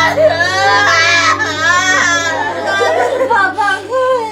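Women wailing and sobbing in grief. The cries are high-pitched and rise and fall, then drop lower and break up about halfway through, over a steady low hum.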